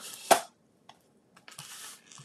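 A silicone craft sheet being handled on a grid paper-crafting mat: a sharp tap about a third of a second in, a couple of faint ticks, then a soft rustling slide over the last half second as the sheet is brought across the mat.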